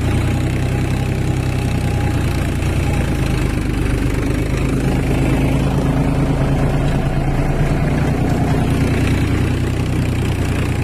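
Farmtrac 45 tractor's three-cylinder diesel engine running steadily under load, driving a 7-foot Shaktiman rotavator through the soil.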